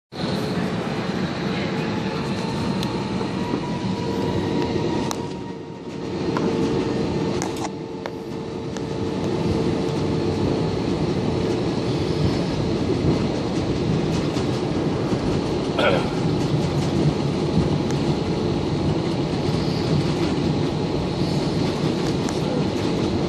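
Cabin noise inside an Airbus A320 taxiing before takeoff: a steady rumble of the engines and air-conditioning with a faint steady hum, dipping briefly about six seconds in, with a couple of soft clicks.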